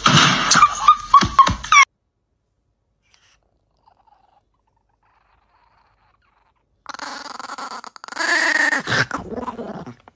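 A few seconds of near silence, then a chihuahua growling over its tray of food as a finger reaches toward it. Before the pause there is a short burst of animal sound.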